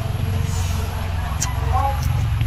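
A steady low rumble throughout, with faint talking and a few small clicks over it.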